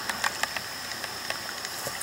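Quiet outdoor evening ambience: a steady faint hiss with a few soft, brief clicks.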